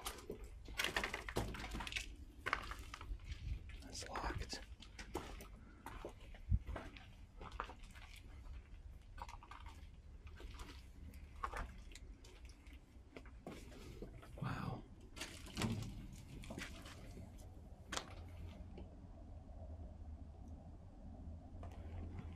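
Footsteps on a debris-strewn floor: irregular crunches and clicks of grit, plaster and broken wood underfoot, faint and uneven.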